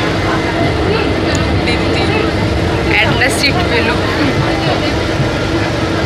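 Passenger train running, heard from inside the carriage: a steady rumble with a constant low hum. Brief voices come in about three seconds in.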